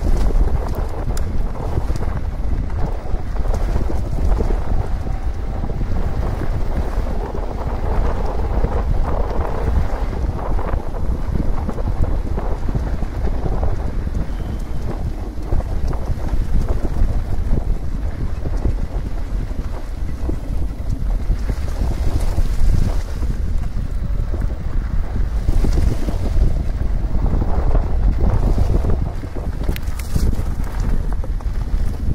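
Wind buffeting the camera microphone during a fast ride on an electric mountain bike, a steady low rumble, with the tyres rolling over a dirt and gravel road.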